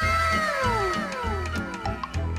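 Edited-in background music with a steady low beat, with a sound effect laid over it: a pitched tone sliding down in pitch for about a second and a half, then a shorter falling tone near the end.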